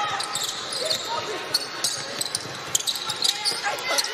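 Basketball dribbled on a hardwood court during live play, repeated sharp bounces mixed with court noise and faint voices from the floor.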